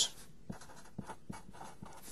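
Faint scratching and short ticks of a pen writing, as a conversion factor is written out on the bottom of a fraction.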